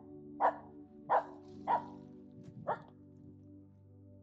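Finnish Spitz barking: four sharp barks, the first three about half a second apart and a fourth, weaker one about a second later.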